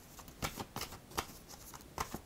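A deck of oracle cards being handled and shuffled in the hands: a handful of soft, irregular card snaps and flicks.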